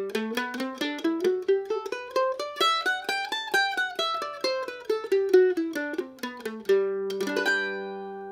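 F-style mandolin played with a flatpick: a fast run of single picked notes that climbs and then falls back down, ending in a strummed chord that rings out near the end.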